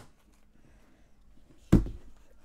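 Low room hush, then one heavy thud near the end: something striking or being knocked against a hard surface during a game of catch.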